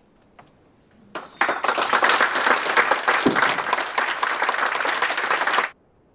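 Audience applauding: the clapping starts about a second in, swells quickly to a dense, loud patter and cuts off suddenly shortly before the end.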